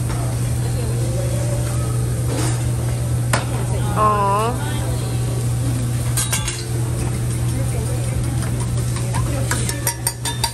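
Chicken breasts and fried rice sizzling on a steel teppanyaki griddle over a steady low hum, with a few sharp clacks of the chef's metal spatula against the flat-top. A short voice sounds about four seconds in.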